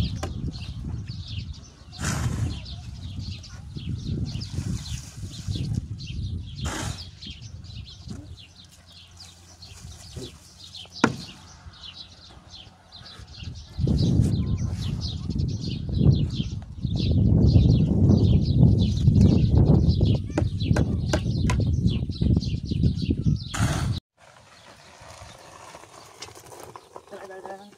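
A steel shovel scraping and knocking in a metal wheelbarrow of sand-cement mix, with a few sharp strikes, over a loud low rumble and rapid high chirping.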